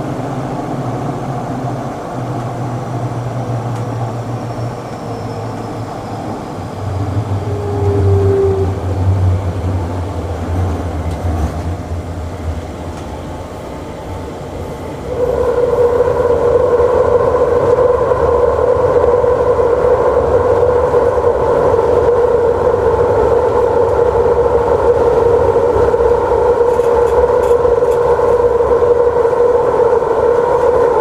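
Airport metro express train running through a tunnel, heard from inside the driver's cab: a steady rumble with a low hum. About halfway through it jumps suddenly louder into a steady whine that holds on.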